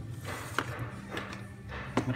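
A few light clicks and rustles of cables and RCA plugs being handled and fitted together, the sharpest click about half a second in.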